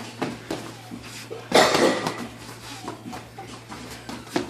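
Boxing gloves landing on gloves and headgear during sparring, scattered thumps and slaps with a louder flurry about one and a half seconds in, mixed with feet shuffling on the ring canvas.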